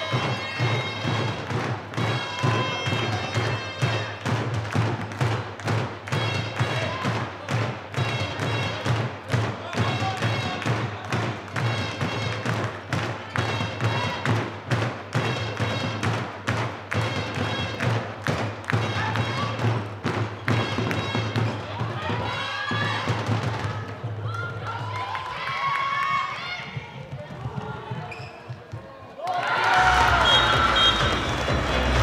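Handball match in a sports hall: a steady beat of sharp thuds, about two a second, over a low hum, with shouting voices. The beat stops a few seconds before the end, leaving voices.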